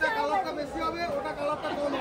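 Only speech: several people chattering at once, their words indistinct.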